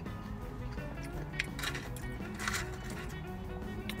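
Soft background music with steady notes, and a few short, soft noises in the middle.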